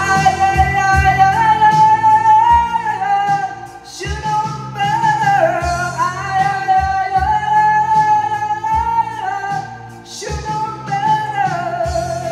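A man singing long held notes with vibrato into a microphone, without clear words, over a backing track with bass and a steady drum beat. There are three long phrases, with breaths about four and ten seconds in.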